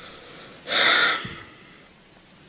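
A person takes one sharp, noisy breath a little over half a second in, lasting about half a second.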